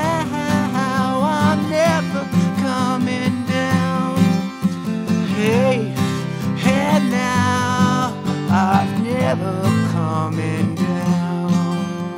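Acoustic guitar strummed steadily in a solo country-folk song, with a man's wordless vocal lines sliding over it near the start and again around the middle.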